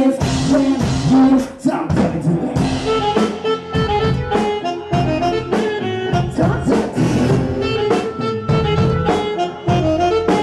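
Live band music: keyboards playing a melody with sustained notes over a steady beat.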